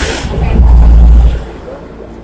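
A loud, flat low rumble on the microphone lasting about a second, starting about half a second in and cutting off suddenly.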